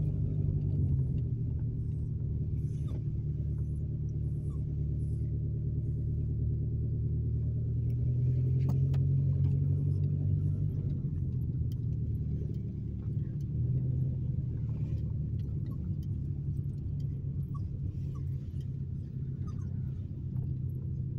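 Car engine and road noise heard from inside the cabin while driving slowly, a steady low drone that swells a little about halfway through.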